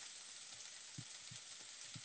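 Faint, steady sizzle of chicken and plum slices frying in a pan, with a few soft low knocks.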